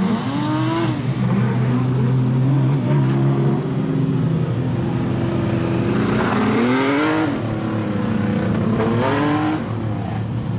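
Production sedan race car engines running, the note rising as they rev up about a second in, again around six to seven seconds, and once more near the end.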